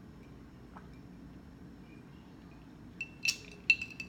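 Quiet for about three seconds, then a few sharp, ringing glassy clinks near the end: ice cubes knocking against a glass mason jar as it is moved after a drink.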